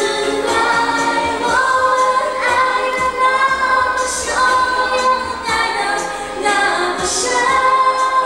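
A song: a voice singing long held notes over a musical backing with light percussion.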